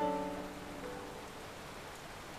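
Soft background music: a sustained chord struck at the start that slowly fades, with one new note joining just before a second in.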